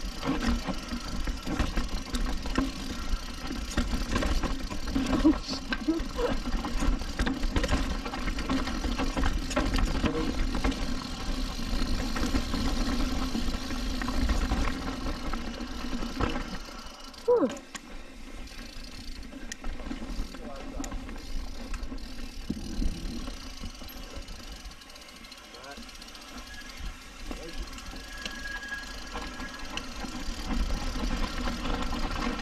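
Downhill mountain bike descending a rocky dirt trail: tyres running over dirt and rock with many small knocks and rattles from the bike, in a steady rumble that eases off after about sixteen seconds.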